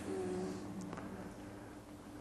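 A pause between spoken sentences: faint room tone with a steady low hum, and a soft, short hummed "mm" in the first half-second that fades out.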